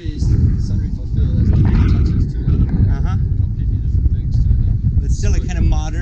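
Wind buffeting the microphone: a loud, gusting low rumble that comes in suddenly and stays.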